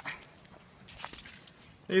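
Mostly quiet background between spoken words, with a few faint clicks.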